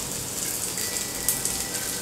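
Fish pieces shallow-frying in oil on a flat tawa, a steady crackling sizzle.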